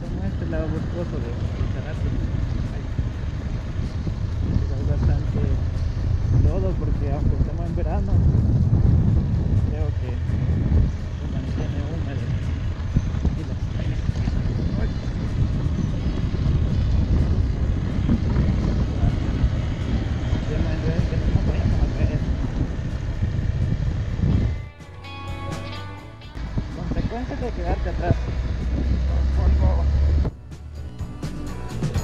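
Motorcycle engine running under load on a steep dirt climb, heavy with wind and road rumble on a helmet-mounted camera. The sound drops away for a second or so near the end, then comes back.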